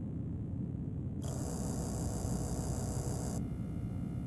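A low, steady rumbling drone, joined a little over a second in by a burst of static hiss that cuts off suddenly about two seconds later.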